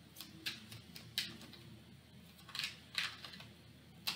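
Tarot cards shuffled by hand, a few soft, irregular card flicks and taps against each other.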